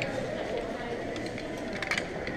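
Steady background hum of a busy shop with indistinct voices, and a few light clicks near the end as sunglasses are handled on a display rack.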